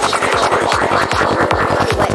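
Electronic trance track at 152 bpm. Its kick drum and fast rolling bassline come back in at the start, after a passage without bass, under a bright synth wash and steady hi-hats.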